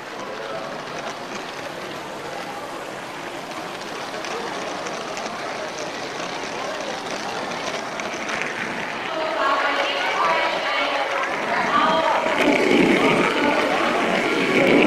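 Lego train running steadily along its track. People's voices come in about two-thirds of the way through and grow louder toward the end.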